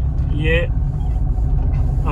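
Maruti Swift's DDiS diesel engine heard from inside the cabin, a steady low drone as the car pulls under hard throttle in second gear on its automated manual gearbox.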